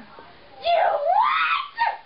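A person's voice letting out a loud, wordless scream that starts about half a second in and rises steeply in pitch for about a second, followed by a brief second cry near the end.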